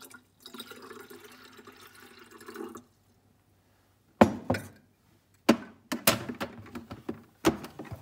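Water pouring from a jug into the plastic water tank of a De'Longhi Magnifica S Smart coffee machine for about three seconds. In the second half, several sharp knocks and clicks of the jug being put down and the plastic tank being handled; these are the loudest sounds.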